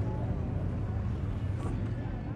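Steady low rumble of an idling engine, with faint voices in the background.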